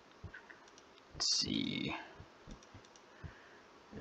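Several faint computer mouse clicks. About a second in there is a brief, louder noise lasting under a second.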